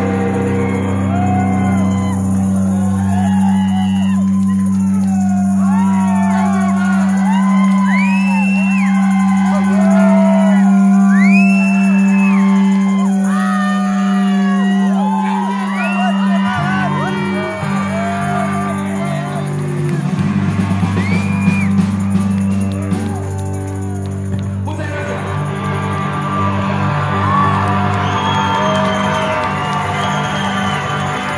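Live rock music: a loud, held droning low chord from the band, with many long rising-and-falling whooping shouts over it. The drone shifts about halfway through and again near the end.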